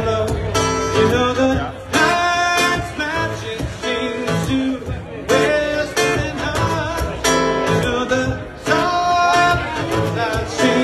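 Live band music with guitar prominent, in a steady rhythm.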